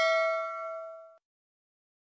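Bell-chime 'ding' sound effect of a subscribe-button animation, marking the notification bell being switched on. Struck just before, its ring of several clear tones fades and then cuts off suddenly about a second in.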